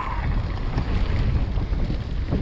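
Wind buffeting the action camera's microphone as a mountain bike rolls fast down a dirt trail, with a steady, fluttering low rumble of wind and tyres on dirt.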